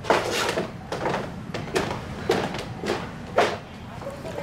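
Footsteps on a wooden floor at walking pace, about two steps a second, each a short, sharp knock.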